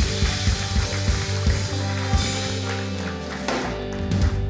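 A live band playing an instrumental: held bass notes under a steady run of drum hits.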